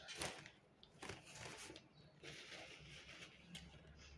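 Faint rustle of a paper napkin being handled, loudest just after the start, followed by a few fainter rustles and quiet eating noises.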